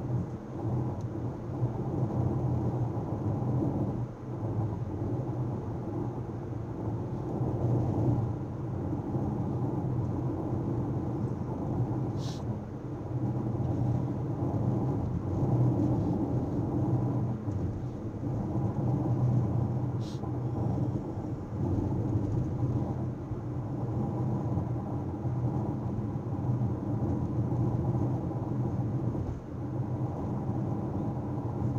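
Car interior road and engine noise picked up by a dashcam's built-in microphone while driving at steady speed: a steady low rumble. Two brief high-pitched clicks stand out, about twelve seconds in and again about twenty seconds in.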